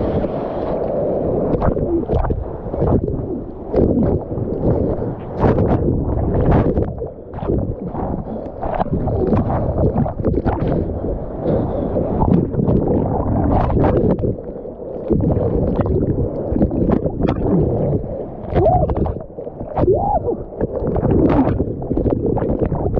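Seawater churning and bubbling around a waterproof camera at the surface, which dips under and comes back out, with many short splashes through the whole stretch.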